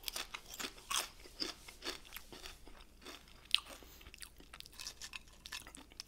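A person chewing potato chips: a run of irregular crunches, with one sharper crunch about three and a half seconds in.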